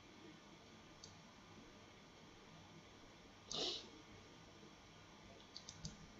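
Near silence with faint room tone, broken by one short, high-pitched sound about three and a half seconds in and a few quick clicks near the end.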